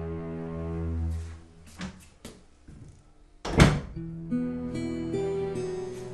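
A wooden interior door is shut with a single sharp thunk about three and a half seconds in, the loudest sound here. It comes during a lull in soft background music, which returns afterwards as plucked guitar notes.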